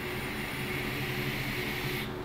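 Steady hiss of a vape mod being drawn on in one long pull of about two seconds: the atomizer coil firing and air rushing through it, cutting off at the end of the hit.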